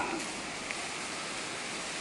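Steady, even hiss of outdoor background noise, with no distinct events.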